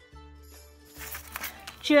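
Scissors cutting through corrugated cardboard, a few short snips from about halfway, over soft background music; a woman's voice begins at the very end.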